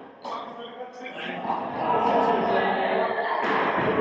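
A padel ball thuds once about a quarter second in, followed by a mix of voices and background music.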